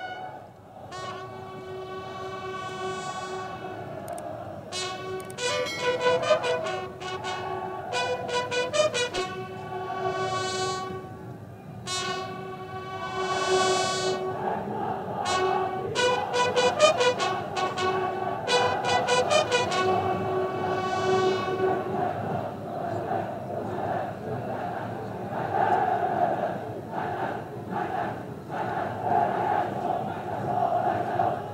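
Military bugles sounding a ceremonial call: sustained and rapidly repeated notes on a few fixed bugle pitches, lasting about twenty seconds. After that comes a more even background murmur.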